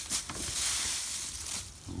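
Dry winged moringa seeds rustling as a hand stirs and scoops through a pile of them in a paper bag, a crisp papery hiss that fades out near the end.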